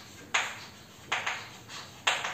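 Chalk writing on a blackboard: three short strokes, each starting sharply and fading quickly.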